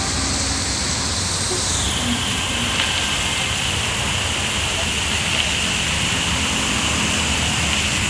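Fountain water jets spraying and falling into a pool: a steady rushing hiss, with a thin high tone above it that drops slightly in pitch about two seconds in.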